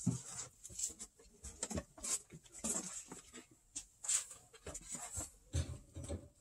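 Vinyl record sleeves being lifted out of a cardboard box and handled: irregular soft rustles, scrapes and light taps of card and shrink-wrap.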